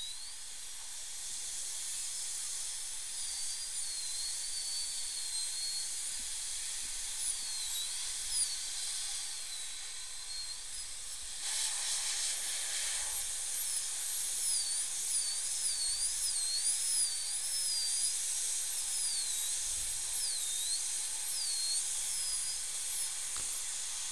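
High-speed dental handpiece whining over a steady spray hiss, its pitch dipping and rising again and again as the chamfer bur bites into the tooth and lets off, cutting down the tooth for a crown preparation. The hiss grows louder about halfway through.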